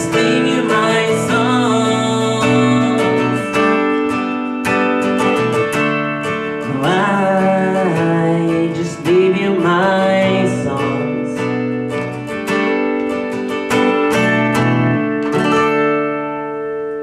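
Steel-string acoustic guitar strummed in a steady rhythm, with wordless singing over it in the middle. The strumming stops near the end, leaving the last chord ringing.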